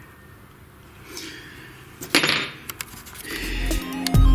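Quiet room tone broken by a single sharp knock about two seconds in, then electronic music fading in near the end.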